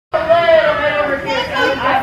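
Voices talking and chattering, with one long, high-pitched voice in the first second.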